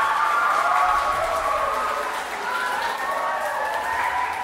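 Audience applauding, with overlapping voices cheering and calling out over the clapping.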